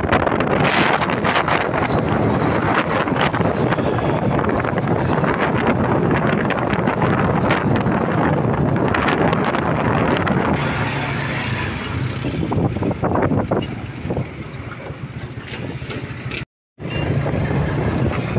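Wind rushing over the microphone with road noise from a moving vehicle, a steady loud roar that eases somewhat near the end. It cuts out completely for a split second shortly before the end, then resumes.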